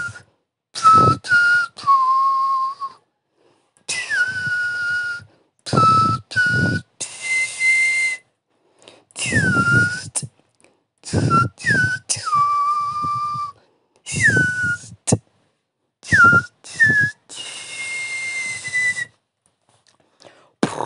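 Beatboxer performing a whistle-based routine in short repeated phrases. Each whistled note drops in pitch and then holds over low kick-drum sounds, and several phrases end on a long held whistle, with brief silences between phrases.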